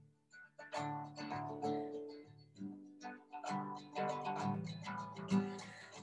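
Acoustic guitar played alone, notes ringing in an instrumental gap between sung lines; it comes in after a brief pause about half a second in. Heard through a Zoom video call.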